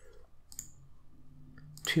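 A single sharp mouse click about half a second in, over low room tone; speech starts just before the end.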